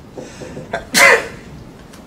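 A man's single loud, explosive burst of breath, a cough or sneeze, about a second in, with a short catch just before it.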